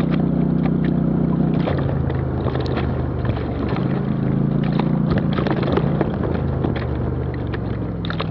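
Off-road vehicle engine running as it rides along a rough dirt trail. The engine note drops a couple of seconds in and picks up again about four seconds in, with scattered knocks and clicks from the bumpy ground and brush.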